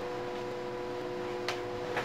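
A steady machine hum made of several even tones over faint room noise, with a single short click about one and a half seconds in.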